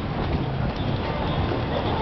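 Footsteps on a hard walkway amid the steady hubbub of a busy city passage, with indistinct voices.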